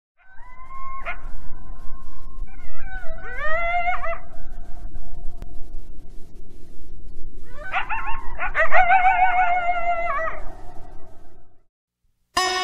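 Coyotes howling and yipping: one long held howl, then two bursts of wavering, overlapping yips and howls from several animals, over a steady low rumble. The sound stops shortly before the end.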